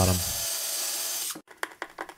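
Electric drill running for about a second and a half with a steady high whine and hiss, then stopping abruptly, likely boring a pilot hole at the strap's mounting point in the plywood carcass. It is followed by several light clicks.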